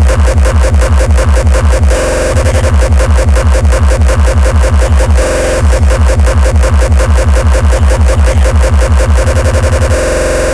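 Terrorcore playing: a rapid train of heavy, distorted kick drums at about four a second under a sustained synth tone. The kicks drop out briefly twice and crowd into a faster roll near the end.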